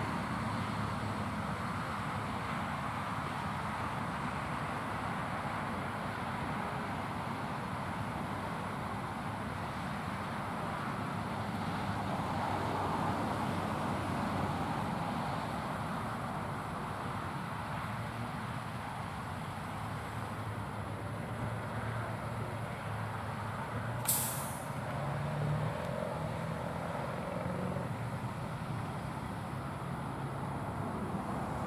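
Bucket truck's engine running steadily with a low hum while the boom is raised. A single short, sharp hiss cuts in about 24 seconds in.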